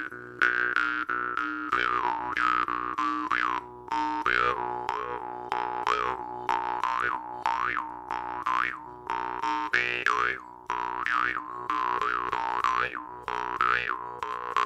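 Jaw harp plucked in a steady slow groove: a constant drone under rapid repeated plucks, with the overtone melody swooping up and down about once a second as the player's mouth shapes the sound.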